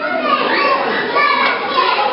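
Children playing: many high-pitched children's voices chattering and calling out over one another.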